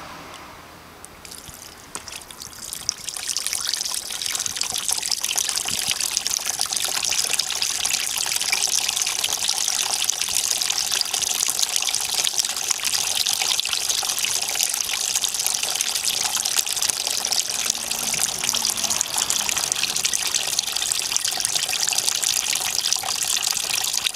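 Water poured from a hose into a cup with holes in its bottom, falling through in several thin streams that splash into a plastic tub of water. It starts about a second in, builds over the next few seconds and then runs steadily.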